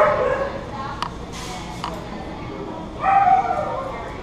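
A dog barking twice, a short high call at the start and another about three seconds later, with a couple of sharp clicks in between.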